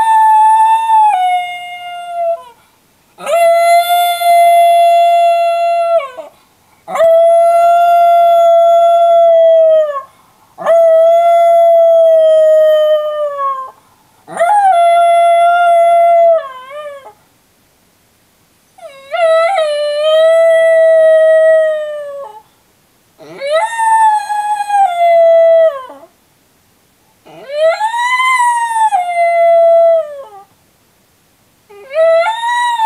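Miniature schnauzer howling, left alone in its crate: about eight long howls of two to three seconds each, mostly held on one high pitch that sags a little at the end, with short pauses for breath between them.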